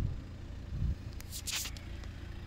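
Handling noise as the phone is moved: a low thump at the start, a soft bump just under a second in, then a brief rustle of clothing or hand against the phone about one and a half seconds in, over a steady low background rumble.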